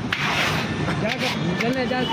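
Low voices talking over a steady low rumble, with a short click and faint scraping of peanuts and sand in an iron roasting pan.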